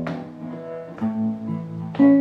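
Acoustic guitar playing alone between sung lines of a slow song: chords struck about once a second, each left to ring out.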